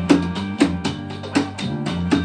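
Barrel-shaped wooden hand drum struck with bare hands in a steady rhythm, about two strokes a second, over recorded backing music with bass and guitar.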